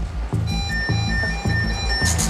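Electronic background music with a steady pulsing bass beat; high electronic tones join about half a second in.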